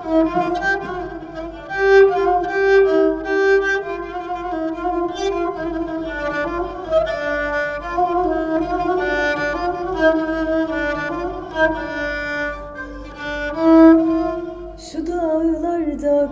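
Kabak kemane, the Turkish gourd-bodied spike fiddle, played solo: a bowed folk melody of held notes with slides between them. The melody breaks off near the end.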